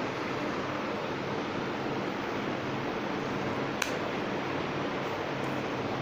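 Steady rushing hiss with a faint low hum, and one light metallic click about four seconds in, from the slotted steel spatula against the steel mixing bowl.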